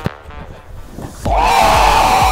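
A football kicked once, a sharp thud right at the start. About a second later loud music comes in, with a steady beat and a long held tone.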